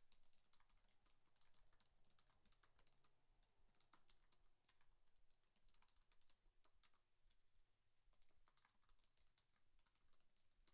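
Faint typing on a computer keyboard: irregular runs of quick key clicks with short pauses between them.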